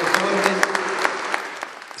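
Audience applauding, the claps thinning and fading toward the end.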